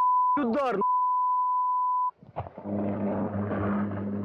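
A steady 1 kHz broadcast censor bleep, cut twice by a brief burst of a man's voice; the bleep masks what is said in the amateur footage. After a short gap comes a low steady hum with a noisy rush over it.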